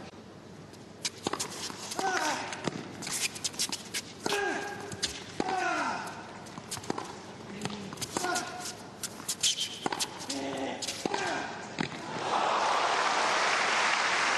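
Tennis point: ball bounced before the serve, then sharp racket strikes and ball bounces, with short falling grunts from a player on the shots. Applause breaks out near the end.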